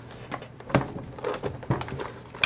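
A few light knocks and clicks of a plastic laptop being handled, the clamshell iBook closed and turned over. The sharpest knock comes just before the middle, another near the end.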